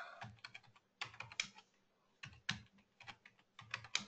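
Computer keyboard typing, faint: a few short clusters of key presses, about a second in, around two and a half seconds in, and near the end, as stock ticker symbols are entered.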